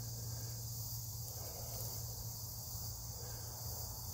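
Insects chirping in a steady high-pitched chorus outdoors in a summer field, with a steady low hum underneath.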